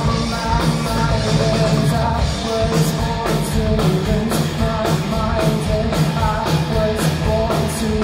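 Live rock band playing: electric guitars, bass guitar and a drum kit, with a melodic guitar line over a steady beat.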